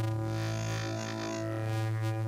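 Dove Audio Waveplane wavetable oscillator holding a steady low note while its tone keeps shifting, its X and Y morph inputs swept by LFOs at audio rate. The sound turns brighter for a stretch in the first half.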